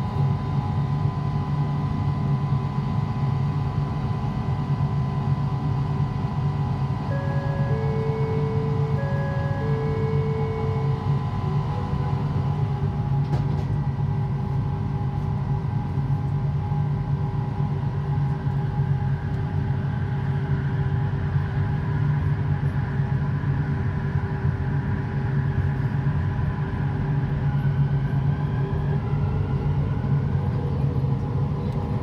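Cabin of a driverless Kelana Jaya line LRT train, its linear-induction-motor running gear humming steadily. A two-note chime sounds twice about eight to ten seconds in, and near the end a rising whine comes in as the train gathers speed.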